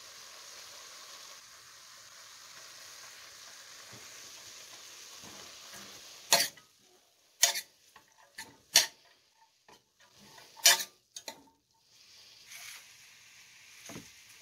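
Chopped greens sizzle steadily as they steam in a stainless steel pot and are stirred. Past the middle, the sizzle falls away and a metal utensil knocks sharply against the pot about six times, the loudest strikes leaving a short ring.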